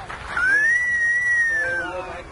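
A single long, high whistle, one clear note that slides up at the start, holds, and dips near the end, louder than the crowd chatter around it.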